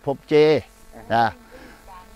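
A man speaking Thai in two short phrases, with a faint steady hum underneath.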